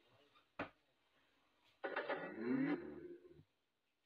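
A sharp click about half a second in, then the TG113 Bluetooth speaker's power-on prompt playing through its driver for about a second and a half as its switch is pressed on the bare circuit board.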